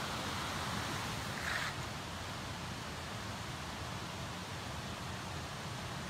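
Steady rushing of creek water running over rocks.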